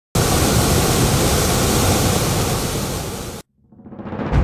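Steady rushing of a large volume of muddy water pouring out of two dam outlet pipes into a concrete channel, cutting off abruptly near the end.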